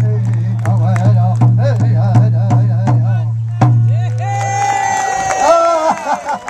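Native American drum song for a hoop dance: drumbeats about two to three a second under high, wavering singing, ending on a final hard beat about three and a half seconds in. High, held calls ring out after the song stops.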